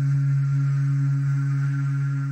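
Low electronic drone: one steady, deep tone with a faint pulsing overtone, used as a dramatic music sting between narrated lines.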